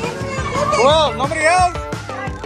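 Party music with a steady beat, with children's voices calling and squealing over it, two high rising-and-falling calls near the middle.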